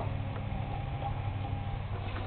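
Steady low hum of a powered LED computer case fan and its power supply running, with one faint tick about a third of a second in.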